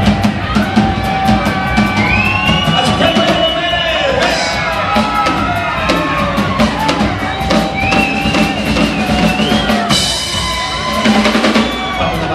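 Live band music: a drum kit keeps a steady beat of evenly spaced strikes, with a high melody line bending up and down over it in two phrases.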